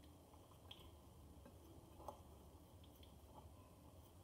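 Near silence: hands rubbing softened butter into flour in a glass bowl, with a few faint soft ticks.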